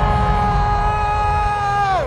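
A man's voice holding one long, steady 'oh' through a microphone and PA, sliding down in pitch as it ends near the end, over a low rumble.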